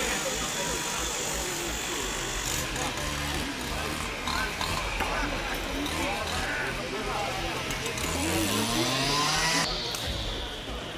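Indistinct chatter of several voices over the steady low drone of machinery. A motor rises in pitch near the end.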